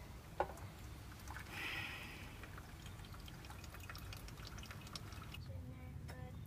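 Hot water poured from a metal kettle through a pour-over coffee cone, trickling and dripping into a cup, with small clicks and a brief soft hiss about a second and a half in.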